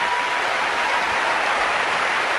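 Large audience applauding: a steady, dense sound of many hands clapping at once.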